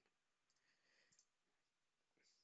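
Near silence, with a few faint computer-mouse clicks about half a second to a second in.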